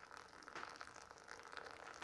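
A thin stream of boiling water from a kettle falling from high up onto ground coffee in a V60 paper filter for the bloom pour, heard faintly as a soft patter with fine crackling.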